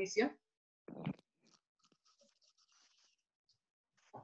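A voice trails off at the very start. About a second in comes one short muffled noise, then only faint scattered clicks and rustles in a near-quiet pause.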